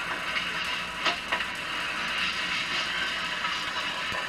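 Steady hiss of an old film soundtrack played through a television's speaker, with two brief faint knocks about a second in.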